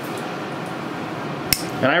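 A single sharp snip of toenail nippers cutting through a lifted, damaged toenail, about one and a half seconds in, over a steady background hiss.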